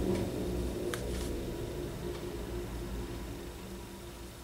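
Fine-tip Micron pen drawing a line on paper, faint, over a low steady hum, with one small tick about a second in.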